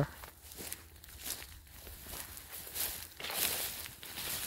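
Footsteps and leaves swishing as someone walks through a tall, leafy green crop: irregular brushing sounds, a couple a second, a little louder about three seconds in.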